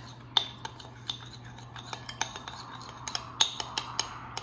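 Metal spoon stirring a thick mustard-and-flour paste in a small glass bowl, with irregular clinks and scrapes of the spoon against the glass.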